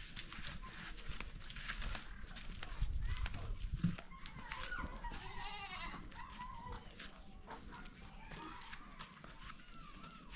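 Goats bleating several times, with quivering, wavering calls, and a low rumble about three to four seconds in.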